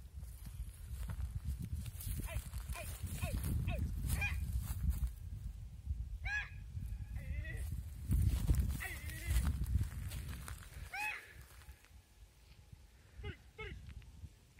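Wind rumbling on the microphone, with many short calls from a grazing flock of sheep and goats scattered through it. The calls come faster near the end as the wind dies down.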